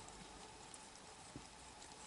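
Near silence: a faint steady hum with a few soft, sparse clicks from a Sphynx mother cat tending her kitten in the nest.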